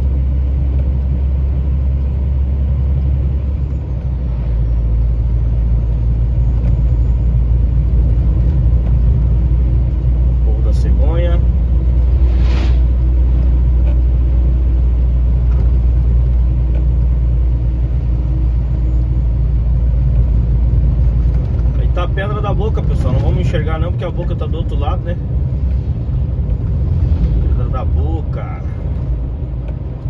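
Steady low drone of a truck's engine and tyres heard from inside the cab while driving along a highway. The rumble grows heavier about four seconds in and eases again after about twenty seconds.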